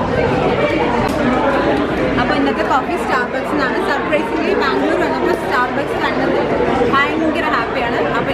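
Indistinct chatter of several people talking at once in a busy café, with no single voice standing out.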